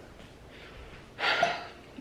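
A woman's single short, sharp breath about a second in, against faint room tone.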